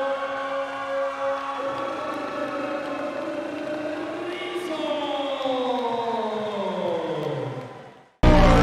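A ring announcer's long, drawn-out shout announcing the winner. It is held on one pitch for about four seconds, then slides down and fades out near the end.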